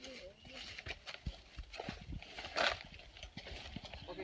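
Footsteps and rustling through leafy jungle undergrowth: a string of irregular soft knocks, with a louder brushing of leaves about two and a half seconds in. Faint voices in the background at the start.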